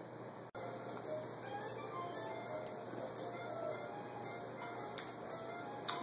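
Faint chimes tinkling at random, scattered single high notes over a low hiss, with a few light clicks.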